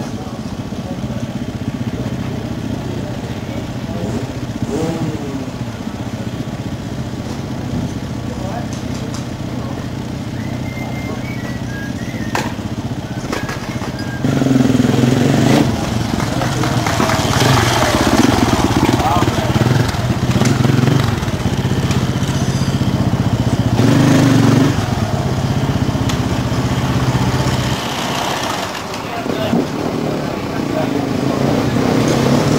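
Enduro motorcycle engine running at low speed, getting clearly louder about halfway through as the bike rides up close, with people talking in the background.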